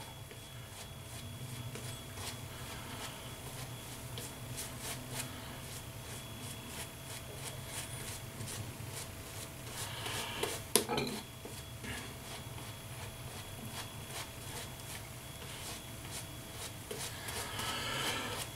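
Shaving brush swirling thick shaving-soap lather over a week's stubble: faint, soft, repeated rubbing strokes of the bristles, with one brief louder knock about two-thirds of the way through.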